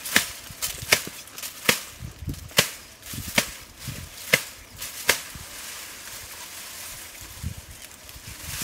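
A hand tool chopping at the ground in dense grass: seven sharp strikes, a little faster than one a second, ending about five seconds in, followed by faint rustling.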